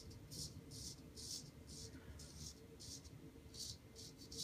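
Straight razor scraping through about three days of stubble in short strokes: a faint, dry rasp about twice a second.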